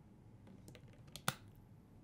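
Light clicks and handling noises of objects on a table, with one sharp click a little past halfway.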